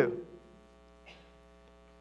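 Faint, steady electrical hum made of a low tone and a stack of even overtones, left audible once the voice stops just after the start.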